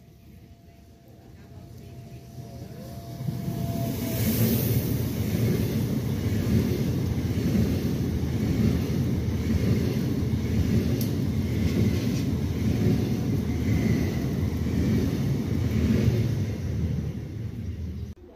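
SBB RAbe 501 Giruno electric multiple unit passing through a station at speed: a rumble that builds over about three seconds, then a loud, steady rush as the train runs by, cut off abruptly at the end.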